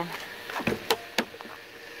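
A few short, sharp clicks and taps, about four within less than a second, from windshield wiper parts being worked loose and pressed down at the base of the windshield. A faint steady hum lies underneath.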